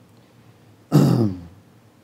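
A man clears his throat once, a short burst about a second in that drops in pitch.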